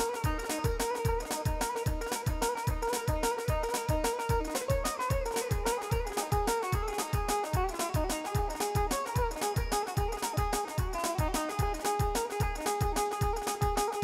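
Kurdish wedding band playing instrumental dance music: a melody line over a fast, steady drum beat of about two and a half beats a second, with no singing.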